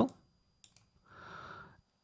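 Two faint short clicks about a tenth of a second apart, then a soft breath lasting about half a second, in an otherwise quiet pause.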